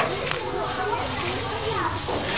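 Several children's voices chattering and calling out at once, overlapping, with no single clear speaker.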